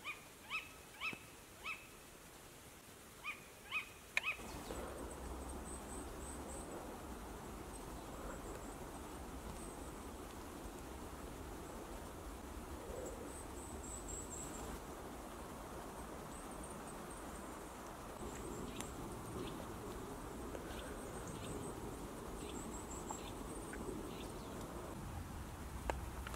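An owl calling at night: about six short, sharp calls in the first four seconds. Then the sound switches to a steady outdoor hush with faint high-pitched bird chirps and a few light ticks.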